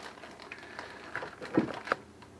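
Handling noises: soft rustling of plastic cheese packaging, with two sharp clicks or knocks near the end.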